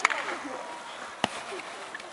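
Two sharp kicks of a football, one at the very start and one about a second and a quarter later, with faint voices in the background.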